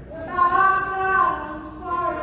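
A woman singing gospel worship into a stage microphone: one long held note that starts a moment in, steps down slightly, and gives way to a new note near the end.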